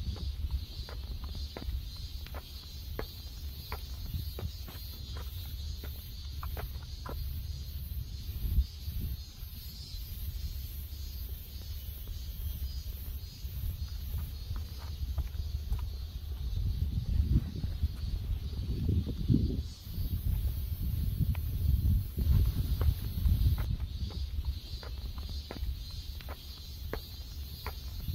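A chorus of cicadas makes a pulsing high-pitched buzz, turning into a steadier hiss for a few seconds in the second half. Footsteps tick along the paved path, and a low rumble on the microphone is loudest in the middle of the second half.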